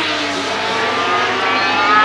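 Racing sidecar outfits' engines running at high revs, the pitch climbing steadily through the second half as the outfits accelerate out of a corner.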